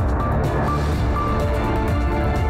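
TV news channel's closing ident music: an electronic theme with a heavy bass and short repeated high notes.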